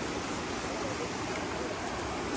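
Steady rush of fast water pouring out of a concrete spillway and churning over rocks.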